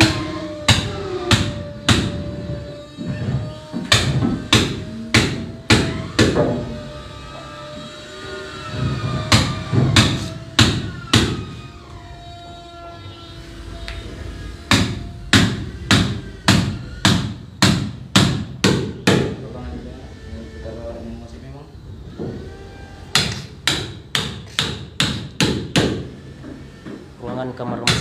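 Hammer blows on the heavy timbers of a wooden boat's engine bed under construction, sharp strikes at about two a second in four runs with short pauses between.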